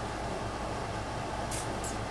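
Steady low hum and hiss of room noise, with two faint, brief, high-pitched scratchy sounds near the end.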